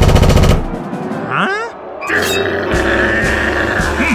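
Cartoon sound effect of fists pounding rapidly on a large wooden door: a fast, machine-gun-like rattle of knocks in the first half second. Then comes a short rising squeak, and from about halfway in a steady rumbling noise over music.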